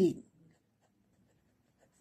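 Pen writing on paper: faint, soft scratching of the tip as a word is written out. A voice trails off at the very start.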